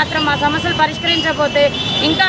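A woman speaking Telugu into a reporter's microphone without pause, with road traffic in the background.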